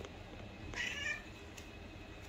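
A cat meowing once, a short high call about a second in.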